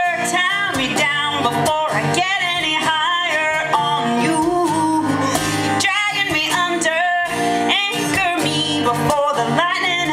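A woman singing a song while strumming an acoustic guitar, performed live into a stage microphone.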